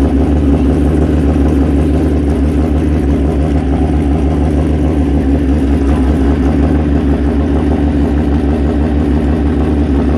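Suzuki Pro Street drag motorcycle engine idling steadily, with a rapid, even pulse and no revving.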